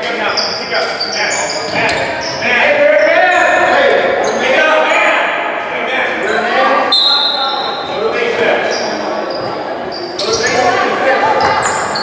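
Indoor basketball game sounds echoing in a gym hall: spectators' and players' voices and calls, sneakers squeaking on the hardwood floor and a basketball bouncing.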